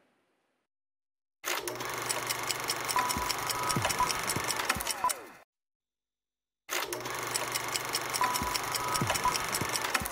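Television programme ident sting heard twice, each time for about four seconds with a gap of silence between: a dense, rapid mechanical-sounding rhythm with a steady high tone, ending in falling swoops.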